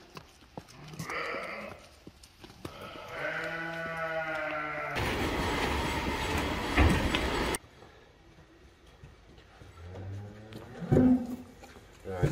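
A farm animal's long, steady call lasting about two seconds, followed by a loud rushing noise of a few seconds that cuts off suddenly. A second, deeper call comes near the end.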